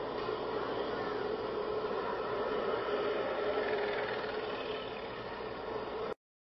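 A steady mechanical hum like an engine idling, over general outdoor background noise, swelling slightly in the middle and easing near the end.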